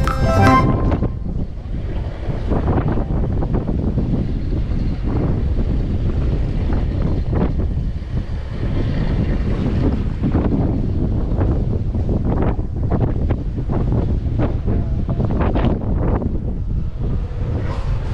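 Wind buffeting the microphone on a ship's open deck: a loud, rumbling rush with irregular gusts.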